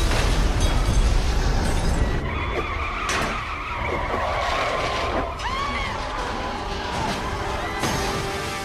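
An explosion with a deep rumble, then car tyres skidding and screeching for about three seconds, with a sharp impact about three seconds in.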